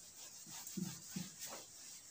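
Whiteboard being wiped clean by hand: a few short squeaking rubs, the strongest about a second in.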